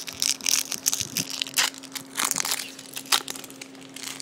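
Foil Pokémon booster-pack wrapper crinkling and crackling in the hands in irregular bursts.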